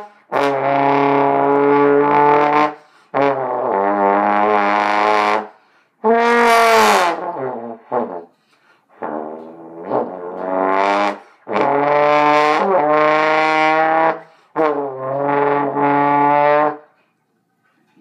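Trombone blown to imitate car sounds: about six loud held notes, some sliding up and down in pitch, with short breaks between them.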